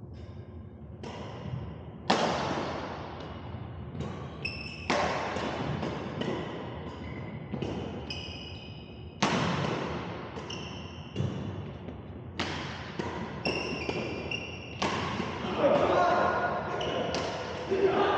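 Badminton rally on a hardwood gym court: rackets striking the shuttlecock in a quick run of sharp hits, some much louder than others, each echoing in the hall. Short high squeaks of court shoes fall between the hits, and voices rise near the end.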